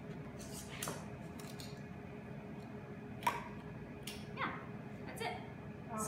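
A few light knocks and clinks of kitchen ware as sliced nori roll pieces are set on a plate and a plastic container is handled, the loudest about three seconds in, over a low steady hum.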